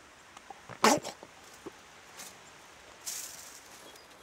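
Snarl of a zombie-like infected man: one short, harsh snarl about a second in, then a brief breathy hiss about three seconds in.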